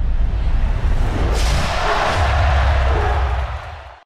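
Produced intro whoosh effect over a deep low rumble. The whoosh swells about a second in, peaks around two seconds and fades away near the end.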